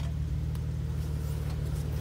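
Jeep Wrangler JK's V6 engine running steadily at low speed as the Jeep crawls over a culvert pipe and rocks, a low even hum with no revving.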